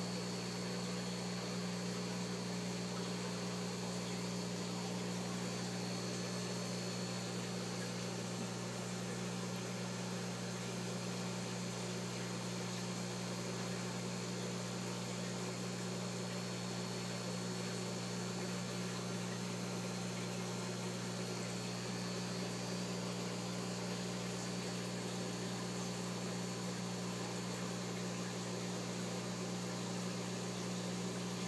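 Steady electrical hum with a constant hiss over it, unchanging throughout: mains-powered aquarium pumps and filters running.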